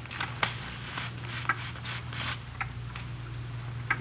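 Radio-drama sound effect of an envelope being slit open with a pocket knife: soft paper rustling and crackling with a scatter of small sharp ticks. A steady low hum of the old recording runs underneath.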